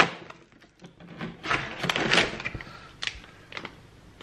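Rustling and light knocking of a cardboard advent calendar door being opened and a small plastic-film packet pulled out. The rustle comes in a run of bursts from about a second in, followed by a couple of sharp clicks near the end.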